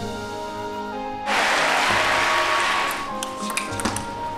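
Background music with held chords; about a second in, a crowd cheering and applauding swells over it for about two seconds. Near the end come a few sharp clicks of a table tennis ball in a rally.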